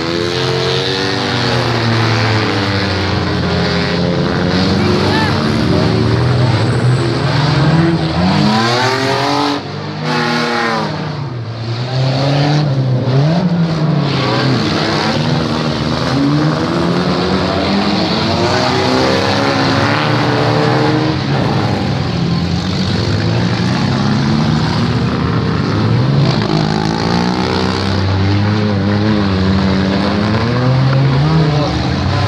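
Several demolition derby cars' engines revving and running together, their pitch rising and falling over and over as the cars drive and manoeuvre.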